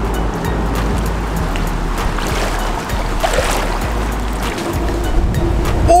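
Background music over shallow seawater sloshing and lapping, with a steady low rumble of wind on the microphone.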